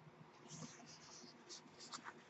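Faint rustling and sliding of paper as a book is handled and its pages turned: a soft swish from about half a second in, then a couple of brief rustles.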